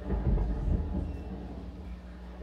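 Live experimental electronic music: a deep rumbling drone from synthesizer electronics and guitar. It swells up sharply right at the start and slowly eases back.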